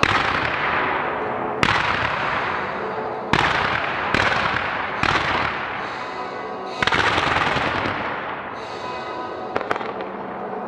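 Fireworks going off in a rapid series: sharp bangs about one to two seconds apart, each followed by a hissing shower of sparks that fades away. Two smaller cracks come near the end.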